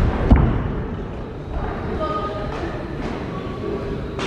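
A blow landing with a thud about a third of a second in during a savate clinch, over the steady murmur and calls of spectators' voices in the hall.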